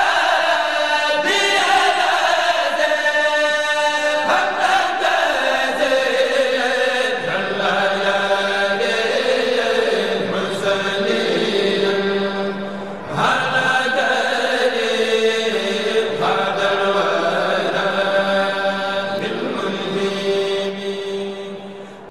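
Islamic religious chanting: a voice holding long, drawn-out notes that slide in pitch, with a brief dip before it carries on.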